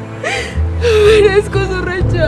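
A woman sobbing in gasping, whimpering breaths in two spells, over background music with held tones.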